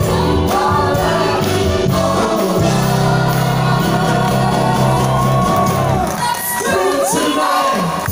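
Several singers singing together over an upbeat band accompaniment; the bass drops out for a moment about six seconds in, then returns.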